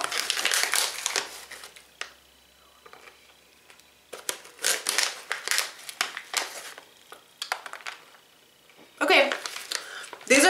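A person chewing a mouthful of crunchy sunflower kernels close to the microphone. The crisp crunching comes in two spells: a short one at the start and a longer one from about four seconds in, with a quiet lull between.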